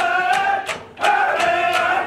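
A group of voices singing in unison on long held notes, over a quick, even percussive beat of about three to four strikes a second. The voices drop out briefly for a breath a little under a second in, then come back.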